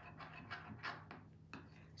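Faint spoon sounds in a bowl of melted chocolate: a few soft scrapes and taps as it stirs, over a low steady hum.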